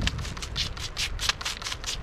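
Hand-held trigger spray bottle squirted rapidly, about four short sprays a second, wetting freshly dug ramps to rinse off dirt.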